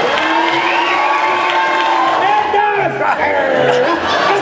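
Theatre audience cheering and whooping, several voices calling out at once.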